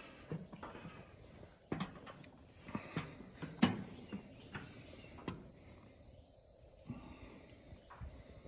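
Steady high-pitched drone of insects, with a handful of sharp knocks from footsteps on wooden steps and deck boards, the loudest near the middle.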